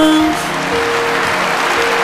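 The last notes of the song stop just after the start, and audience applause follows and continues.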